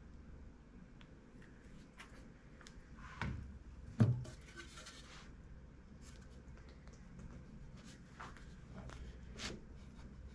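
Quiet workshop handling during a face-to-face glue-up: a few small clicks and taps, a knock and then a sharper thump about three to four seconds in as the boards are brought together, then faint rubbing as the two timber boards are slid over each other on the wet PVA glue.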